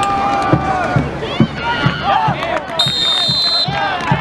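Spectators and players shouting over the play, with a referee's whistle blown once for about a second near the end, whistling the play dead after the tackle.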